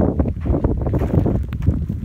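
Wind buffeting the microphone: a loud, uneven low rumble with frequent crackles.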